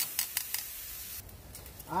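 Marinated steaks sizzling on a hot gas grill, with a few sharp clicks of metal tongs in the first half second. The sizzle drops lower about a second in.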